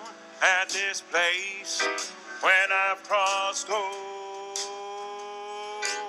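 Male voice singing a country-style musical-theatre song from a cast recording, in short sung phrases that end on a long held note.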